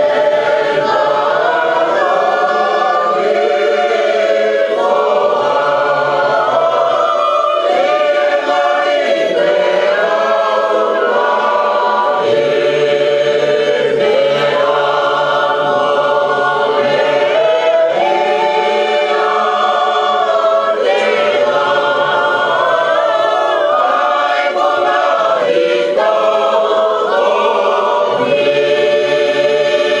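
A congregation singing a hymn together, many voices holding long notes in harmony.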